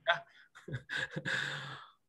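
A man's voice making short murmured sounds, then a long breathy sigh that fades out near the end.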